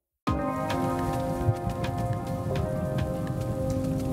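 Weather-forecast intro jingle starting abruptly about a quarter second in: sustained synthesizer chords over a dense, rain-like patter of crackles and clicks.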